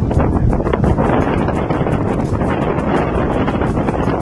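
Wind blowing across the microphone of handheld footage, a loud, steady low rumble with small gusts.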